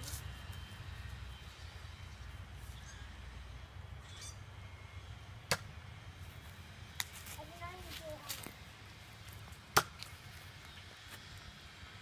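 Toy foam-dart blaster shots: three sharp snaps spaced one to three seconds apart, the last near the end the loudest.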